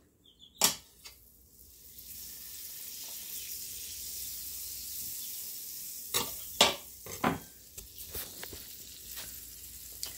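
Butter sizzling on a hot electric griddle, a steady hiss that starts about two seconds in. A few sharp utensil knocks come in the middle.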